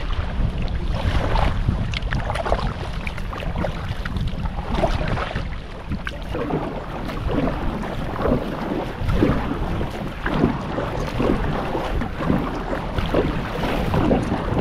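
Double-bladed kayak paddle dipping and splashing into calm water in repeated strokes, with water trickling off the blades. A steady rumble of wind on the microphone runs underneath.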